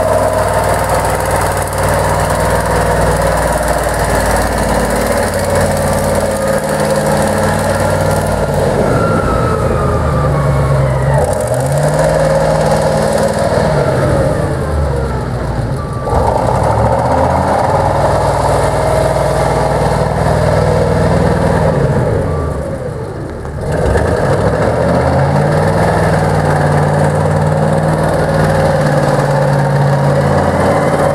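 Deutz F8L413 air-cooled V8 diesel of a Wagner ST3.5 underground scooptram loader running as the machine drives, its engine speed rising and falling with the throttle several times. It drops off briefly about 22 seconds in, then picks up again.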